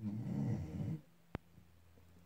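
Sleeping pit bull snoring once, a rough snore lasting about a second, followed by a single sharp click.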